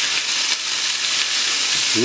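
Small pieces of raw pork sizzling steadily as they sear in hot sunflower oil in a stainless steel frying pan on high heat, stirred and spread with a wooden spatula.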